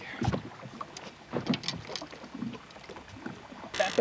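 Scattered light knocks and clatter from people and gear moving in a small fishing boat, over faint water and wind noise. Near the end a sudden louder sound sets in, carrying a high steady whine.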